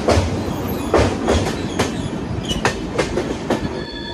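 Passenger train running along the track, a steady low rumble with irregular sharp wheel clacks, the loudest about a second in.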